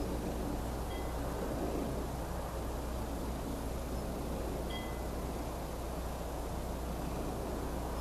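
Steady background noise: a constant low hum under a broad rumbling hiss, with two faint short high pips, one about a second in and one just before five seconds.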